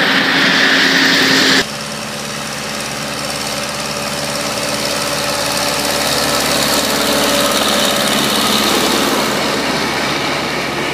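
Engines of rail-mounted track maintenance machines running steadily as they travel past along the track, swelling slowly and easing off near the end. For the first second and a half a louder rail-running sound with a high band is heard, cut off abruptly.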